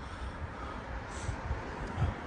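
Steady outdoor urban background noise: an even hiss over a low rumble, with a few faint knocks.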